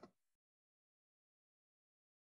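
Near silence: a brief faint click right at the start, then nothing.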